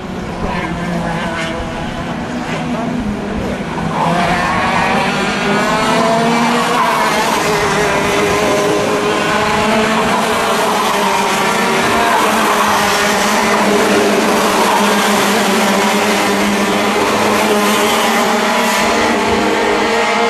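Several Junior TKM two-stroke racing kart engines running on the circuit, their pitch rising and falling as the karts brake and accelerate through the corners. The sound grows louder about four seconds in as the karts come closer.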